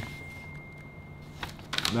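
A quiet pause with a low steady room hum and a faint, thin, high-pitched steady tone that cuts off about one and a half seconds in. Near the end come a few short crackles of a folded paper sheet being handled.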